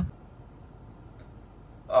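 Faint, steady background noise inside a stationary car, with no distinct sounds.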